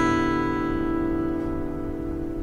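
A strummed chord of open strings on a Yamaha FG-420-12 acoustic guitar, strung as a six-string, ringing out and slowly fading.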